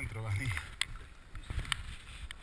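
Mountain bike riding a rough forest trail: a few sharp knocks and rattles from the bike, with a brief voice-like sound in the first half second.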